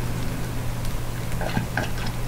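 A person drinking from a glass mug, with a few faint swallows about one and a half seconds in, over a steady low hum.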